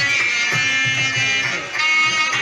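Music: a melody of held notes over a steady low beat of about four beats a second.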